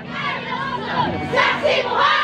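A large group of voices shouting together in a chant or battle cry, with many overlapping voices rising and falling in pitch while the drums are silent.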